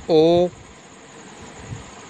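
A man's voice says a single letter, "O", near the start, then a steady background hiss with a faint high whine for the rest.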